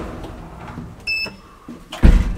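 A short electronic beep from an elevator car-call button panel about a second in, as the floor button registers. Around it is the shuffling and handling noise of someone stepping into the small car.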